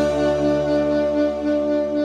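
Saxophone holding the long final note of a slow ballad with a gentle vibrato, over a sustained low closing chord from a backing track.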